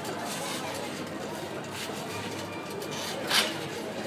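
Indistinct background chatter of people's voices, steady throughout, with one short sharp noise a little over three seconds in.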